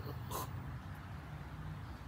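A brief breathy laugh, once, over a faint steady low hum.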